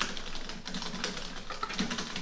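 Typing on a computer keyboard: a quick, continuous run of key clicks.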